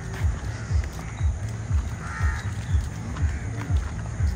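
Footsteps on a paved path at an even walking pace, low thumps about twice a second. A brief higher-pitched call comes about halfway through.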